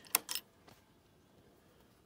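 A key and its key ring clicking and jingling in an ATV's ignition switch: a few sharp clicks in the first half second.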